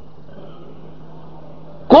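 Steady low hum and hiss in a pause of a man's sermon, then his voice comes back loudly near the end.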